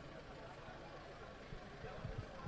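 Faint, steady background noise with a few low knocks near the end.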